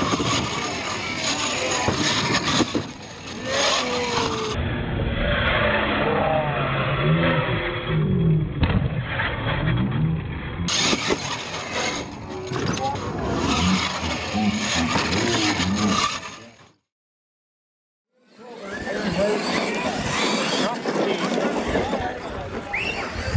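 Radio-controlled monster truck running and jumping over ramps on a gravel course, its motor pitch rising and falling, with spectators' voices throughout. About three quarters of the way through, the sound cuts out completely for about two seconds.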